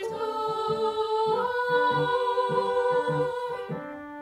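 Children's treble voices of a cathedral choir singing a long held note over an organ accompaniment of shorter, lower notes. The voices stop near the end while the organ plays on.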